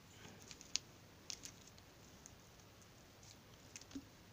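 A few faint scattered clicks and light rustling from multimeter test leads, alligator clips and small diodes being handled on a plastic-covered surface. The sharpest click comes just under a second in.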